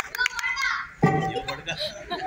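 Children's voices speaking, with a sudden louder, deeper sound about a second in.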